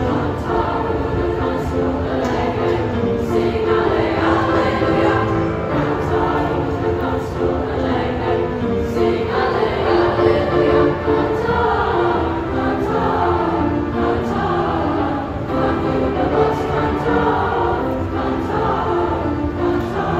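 Junior high school chorus of mixed voices singing in parts, with piano accompaniment, steadily throughout.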